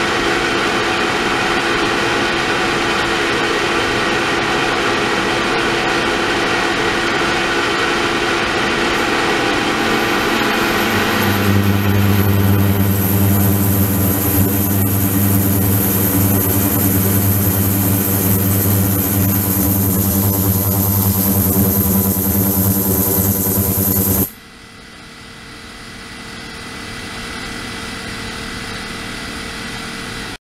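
Ultrasonic cleaning tank running with water flowing in from a pipe: a steady hiss with several held tones. A little over a third of the way in, a strong low buzz and a high whine join. Both cut off abruptly about four fifths in, leaving a quieter hiss that slowly grows louder.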